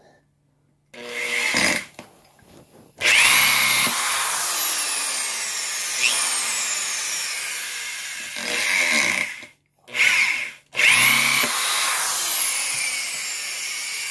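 Milwaukee 6760 corded drywall screwdriver running twice, each time driving a 3-inch deck screw into a wood block. Each run starts with a quickly rising whine, then the pitch slowly falls as the motor works against the screw's friction. Short handling noises come between the two runs.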